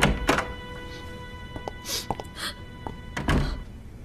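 Wooden door opening with a thunk, then two short sniffs, then a heavier thump a little after three seconds in as the door shuts.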